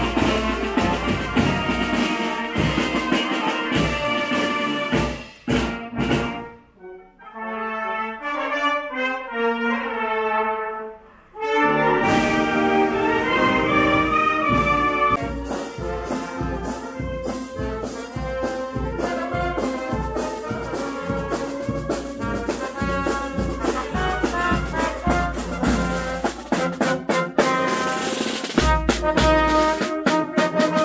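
A marching band of trombones, trumpets, saxophones, bass drum, snare and cymbals playing in the street. About six seconds in the drums drop out and the melody goes on more softly for a few seconds, then the full band with drums comes back in.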